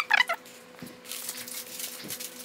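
A short high-pitched squeak at the very start, then the faint crinkling rustle of a sterile drape's paper-and-plastic packaging being peeled open.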